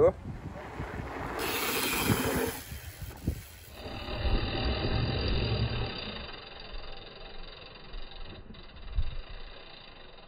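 Wind rumbling and hissing on the microphone, with the low rumble of a mountain bike's tyres rolling down a dirt run-in toward a jump.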